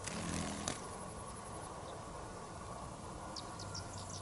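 Faint night-time ambience of insects chirping. A short click comes under a second in, and a few quick high chirps sound about three and a half seconds in.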